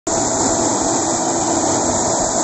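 An old logging truck's engine running steadily and loudly as it moves with a heavy load of logs.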